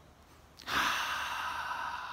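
A man's long, slow breath out through the mouth, a deliberate calming exhale. It starts about half a second in as a steady breathy hiss and slowly fades.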